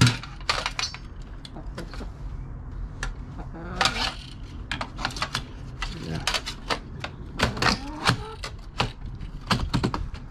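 Metal clatter from the sheet-metal chassis and circuit board of a dismantled Xbox 360 being handled: an irregular run of sharp taps, clicks and knocks, several a second at times. The loudest knock comes right at the start.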